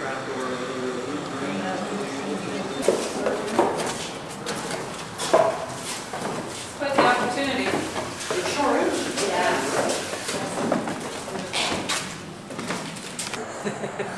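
Indistinct talking, with several sharp knocks scattered through it.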